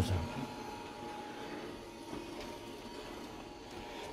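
A vacuum cleaner running steadily in the background: a constant hum with a thin, unchanging whine through it.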